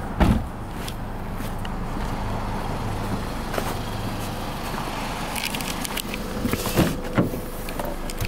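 Steady low hum with handling noise, then a few sharp clunks about seven seconds in as a car's driver door is opened and someone sits down in the seat.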